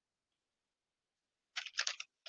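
A sheet of paper being handled, rustling in three quick crinkles starting about one and a half seconds in.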